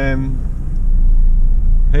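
Steady low rumble of engine and road noise inside a moving car's cabin, growing louder about a second in. A brief spoken 'uh' opens it.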